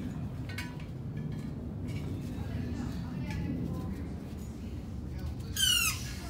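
Hydraulic pump and ram working to bend a big rig's I-beam axle: a steady low drone, a few faint squeaks, and near the end a loud, brief squeal that falls in pitch.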